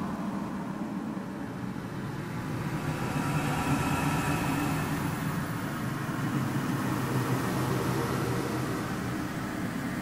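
A steady mechanical drone: a low engine-like rumble under a hiss, swelling slightly a few seconds in.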